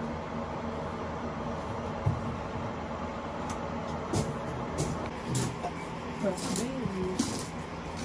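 Steady hum of a fan running, with faint voices in the background from about the middle on.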